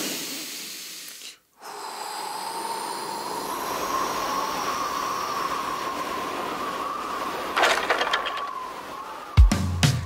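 Cartoon wind sound effect of the wolf blowing: a short whoosh, a brief break, then a long windy blowing with a faint whistle running through it. Near the end comes a clatter of wood and then a heavy crash as the wooden house collapses.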